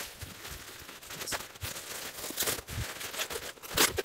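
Bubble wrap crinkling and crackling irregularly as it is folded and pressed around a glass lamp globe, with a few louder, sharper rasps near the end.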